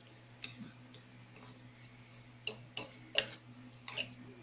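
A utensil clicking against a bowl while a thick anchovy-and-egg batter is stirred: a handful of sharp, irregular clicks, most of them in the second half.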